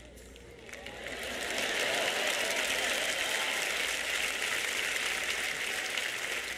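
Audience applause that builds over the first two seconds, then holds steady.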